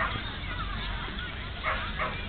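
A dog barking in short high yips, with one bark right at the start and another near the end.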